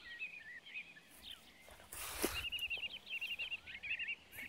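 A songbird singing: a series of quick, repeated looping high notes that grow denser in the second half. A couple of brief rustles come about halfway through.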